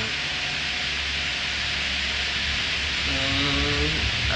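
Steady hiss with a low hum inside a gondola cable car cabin as it gets under way out of the station. A voice sounds briefly near the end.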